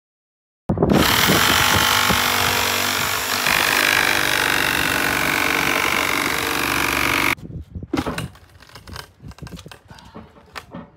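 Cordless power drill running for about six and a half seconds as it drives a screw into the wooden door frame, its pitch stepping up about halfway through, then stopping suddenly; a few knocks and rustles follow.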